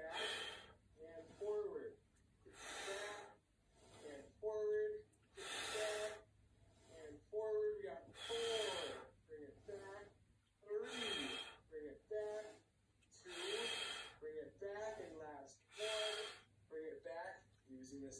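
A man's heavy breathing while straining through one-arm dumbbell kickbacks: a loud gasping breath about every two to three seconds, seven in all, with voiced, speech-like breathy sounds between them.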